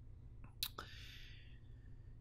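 A short click and then a soft breathy exhale from a person, about half a second in, over a faint steady low hum.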